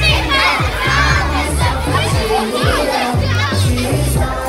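A crowd of children shouting and cheering over loud dance music, its bass line and steady beat running about two beats a second.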